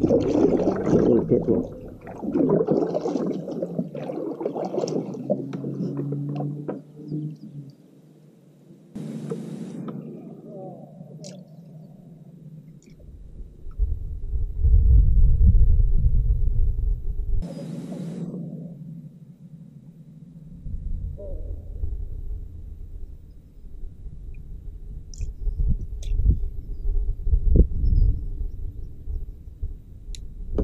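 Kayak paddle dipping and splashing through the water over the first several seconds, then low rumbling with two short hisses about nine and eighteen seconds in.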